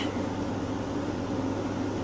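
Steady background room noise: a low hum with an even hiss underneath, and no distinct events.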